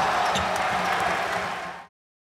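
Arena crowd cheering, a steady wash of noise that eases down slightly and cuts off abruptly just before the end.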